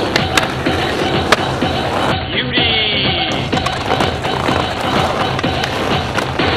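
Skateboard tricks on concrete ledges and pavement: wheels rolling and the board's sharp clacks as it pops and lands, the loudest about a second and a half in, over background music.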